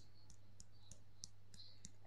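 Faint, rhythmic light taps of the sides of the hands striking together for the EFT side-of-the-hand tapping point, about three or four taps a second.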